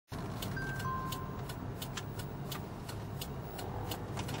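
Steady road and engine rumble inside a moving car's cabin, with a regular turn-signal ticking about three times a second as a right turn approaches. Two short high beeps sound about a second in.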